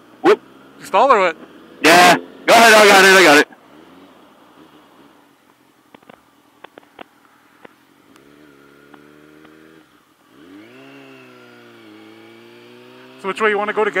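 Motorcycle engine: a steady low note for a couple of seconds, then from about ten seconds in rising in pitch as it accelerates, dipping briefly near twelve seconds at a gear change before rising again. Loud voice bursts come in the first few seconds.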